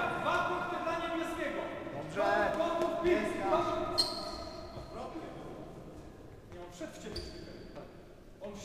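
Voices talking in a large, echoing sports hall, fading toward the end. A sharp metallic ping with a short high ring comes about four seconds in, and a second high ring near seven seconds.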